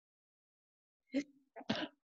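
A person coughing: two short bursts about half a second apart, starting about a second in, the second one longer.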